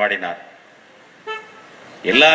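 A man's amplified speech trails off into a pause, and about a second and a quarter in comes one short, high, horn-like toot.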